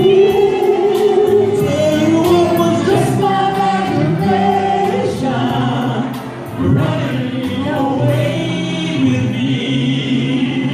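Live male vocal group singing in harmony through a PA, with instrumental backing and a steady beat.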